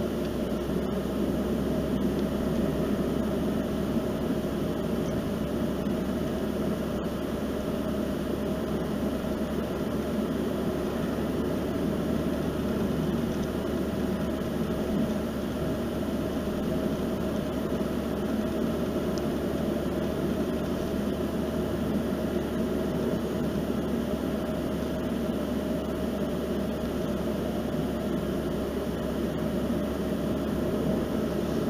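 Steady road and engine noise heard inside a car's cabin while driving at an even speed on asphalt: a continuous low rumble of tyres and engine that stays level throughout.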